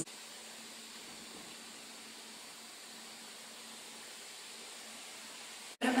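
Steady, even hiss of the recording's noise floor with a faint low hum and no other sound. It drops out abruptly near the end at an edit.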